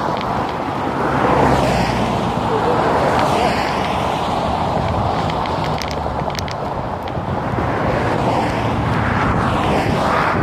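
Traffic on a fast road beside the microphone: a steady rush of tyre and engine noise that swells each time a car goes past, several times, with wind on the microphone. A few sharp clicks come about six seconds in.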